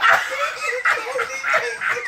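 Men laughing hard in short, repeated, breathless bursts.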